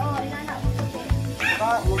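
Background music with a steady bass beat, with short high cries that rise and fall over it.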